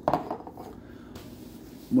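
A single clink of a glass bottle as it is handled, right at the start, followed by faint rustling.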